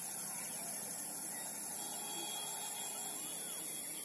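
Steady outdoor hiss across open fields, with faint short bird chirps now and then.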